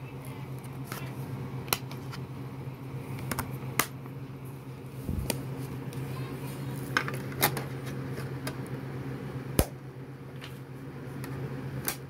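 Handling of a plastic DVD case and disc and a portable DVD player: a string of sharp plastic clicks and snaps as the disc is taken out of its case and loaded into the player, the loudest click near the end. A steady low hum runs underneath.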